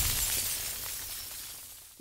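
Intro sound effect: a bright, crashing hiss that fades away steadily.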